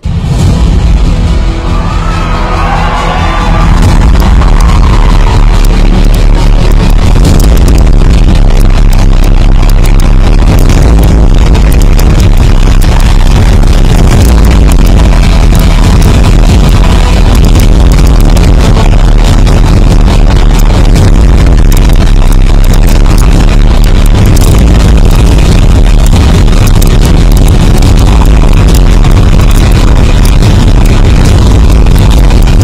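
Loud music with heavy bass played over a hall's sound system. It starts suddenly, builds over the first few seconds, then holds steady and dense.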